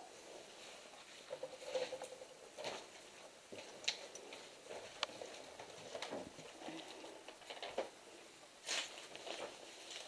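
Footsteps on a floor littered with rubble and plaster debris: irregular small crunches, clicks and scrapes as loose fragments shift underfoot.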